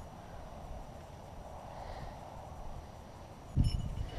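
Steady wind rumble buffeting the microphone, with one loud, short, low knock near the end as the T-perch pole and gloved arm are moved against the camera.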